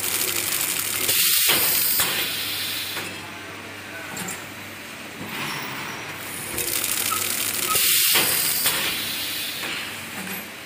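Egg-tray card dispenser and conveyor running, with a mechanical clatter and hiss. The noise swells twice for about two seconds, about a second in and again about six and a half seconds in, as the machine cycles.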